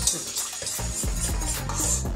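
Wire whisk stirring a butter-and-flour roux in a stainless steel pot, the metal wires scraping and clinking against the pot in quick repeated strokes, over background music.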